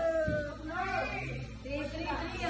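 A high voice gliding up and down in pitch, with a soft thud about a third of a second in.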